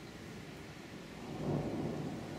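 Thunder rumbling, swelling about a second in and rolling on.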